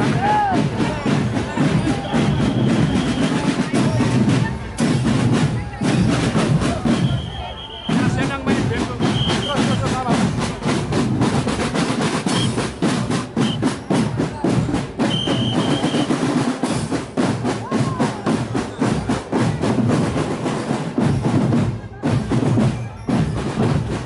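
Marching drum corps playing snare drums and bass drums, the snares in fast, rapid strokes that grow dense from about a third of the way in.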